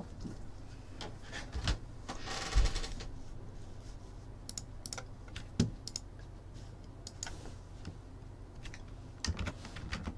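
Rustling and a thump as a large item is handled and set down about two seconds in, then several short bursts of computer keyboard typing and clicks.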